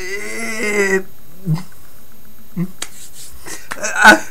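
A man's wordless vocal cry, held for about a second with a wavering pitch, followed by a few scattered short clicks and small vocal sounds.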